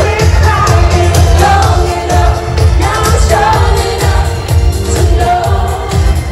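Live pop music played loud through a concert PA: a singer's melody over a heavy bass beat, heard from within the audience.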